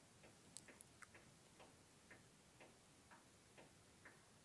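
Near silence with a faint, even ticking, about two ticks a second.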